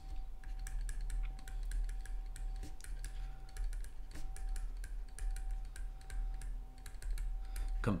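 Pen stylus tapping and scratching on a tablet screen while handwriting, a quick irregular run of small clicks, over a steady low electrical hum.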